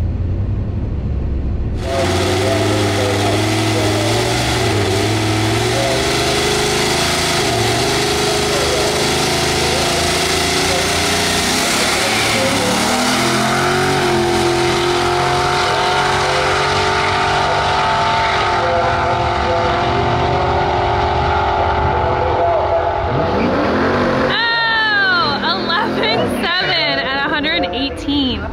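Boosted Mercury Marauder V8 launching at full throttle down a drag strip, its engine note stepping down a few times as it shifts up through the gears; it pulls cleanly, without the backfire that had plagued it. For the first two seconds the engine rumbles low before the launch, and near the end the sound turns into quick sweeps up and down in pitch.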